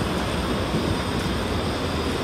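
Narrow-gauge railway carriages rolling past close by, a steady rumble of wheels on the rails.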